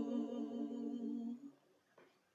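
Two singers holding the closing note of a hymn, hummed with a slight waver, dying away about a second and a half in.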